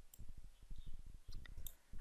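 Faint, irregular clicking and soft tapping from a computer mouse being moved and clicked, with a few sharper clicks among them.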